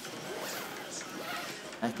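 A zipper being pulled closed on the fabric cover of a portable sauna.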